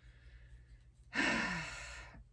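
A woman's sigh about a second in: a breathy exhale, its voice falling in pitch as it fades.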